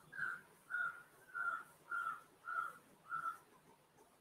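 A bird calling faintly in the background: a short whistled note of steady pitch repeated six times, evenly, about every half second.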